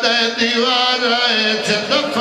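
A man chanting a sung Shia mourning recitation (masaib) in long, wavering, drawn-out notes, without a break.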